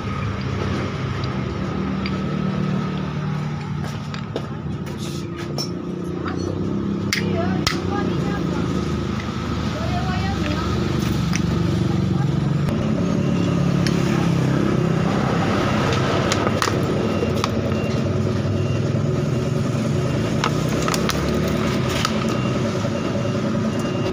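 A vehicle engine hums steadily in the background, with indistinct voices. A few sharp metallic clicks come from scooter CVT pulley parts being handled.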